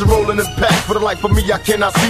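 Hip hop music: a rapped vocal over a beat with deep, regularly repeating bass drum hits.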